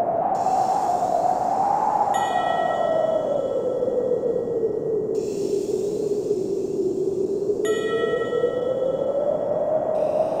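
Ambient interlude of a relaxation music track: a wind-like whooshing pad that slowly swells and sinks in pitch, with two ringing bell chimes, about two seconds in and again near the end.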